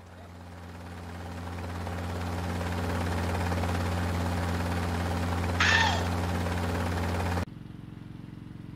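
Helicopter rotor and engine noise, growing louder over the first few seconds and then holding steady as a low hum. A short, high cry with a falling pitch sounds about five and a half seconds in. The helicopter noise cuts off abruptly about a second before the end, leaving quieter outdoor background noise.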